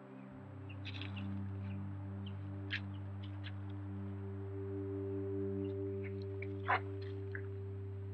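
Ambient background music: a low sustained drone of held tones that swells and pulses slowly, entering just after the start. A few short, high chirps sound over it, the loudest about three-quarters of the way through.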